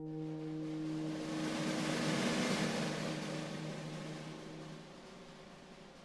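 Wind ensemble in a quiet passage: a held low brass note fades out over about four seconds while a soft, hissing percussion wash swells and dies away, leaving the music quiet near the end.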